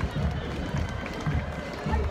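Outdoor street crowd chatter with faint marching band music, and a steady low rumble underneath.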